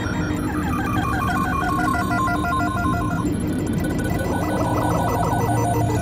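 Electronic ambient music: a fast, trilling, bell-like synth pattern, high in pitch like a phone ringing, runs over steady lower tones and stops about three seconds in.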